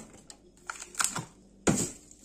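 Packaged food being moved about in a freezer drawer: plastic packs rustle and frozen pouches knock against each other, a few light clicks and then one louder knock near the end.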